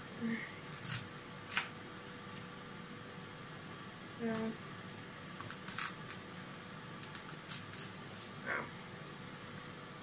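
Kitchen knife chopping an onion on a plastic chopping board: irregular sharp knocks of the blade on the board, a few strokes at a time. A steady fan hum runs underneath.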